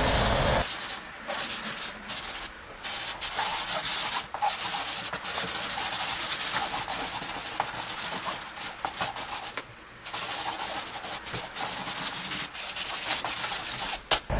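Soft chalk pastel being rubbed by hand across paper to lay in a background. It makes a dry, scratchy hiss in quick back-and-forth strokes, with short pauses about three seconds in and near ten seconds.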